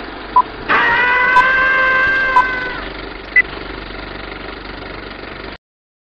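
Old-film countdown leader sound effect: a steady projector-style hiss with a short beep about once a second, and a held pitched tone over it for a couple of seconds early on. A higher beep comes about three and a half seconds in, and the whole sound cuts off suddenly near the end.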